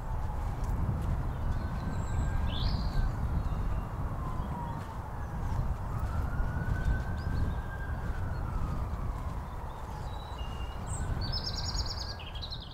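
A steady low rumble with a distant siren wailing slowly up and down, and a few short bird chirps.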